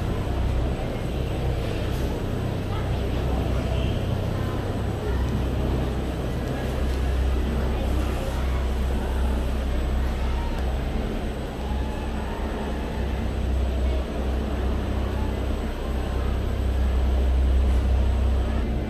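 Steady low rumble of a cable car gondola running through its station, heard from inside the cabin.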